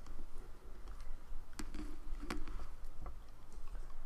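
Light clicks and taps of rubber loom bands being stretched over and snapped onto the plastic pins of a Rainbow Loom, with a couple of sharper clicks midway.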